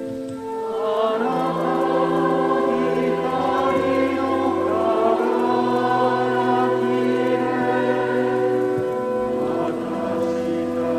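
Choir singing slow, sustained chords, the held notes changing every second or two; it swells back in about a second in after a brief dip.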